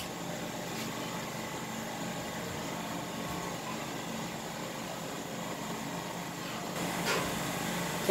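Steady background hum and hiss with no distinct event, a little louder near the end.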